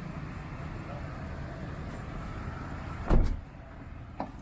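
Steady low hum of a car and road noise, then a car door shutting with a loud thud about three seconds in.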